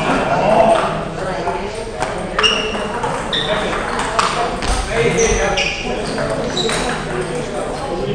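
Table tennis balls struck by bats and bouncing on the tables, sharp irregular clicks from several rallies at once, many with a brief high ring, over indistinct chatter of voices in an echoing hall.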